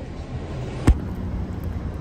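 Steady low rumble of background vehicle traffic, with one sharp thump just under a second in.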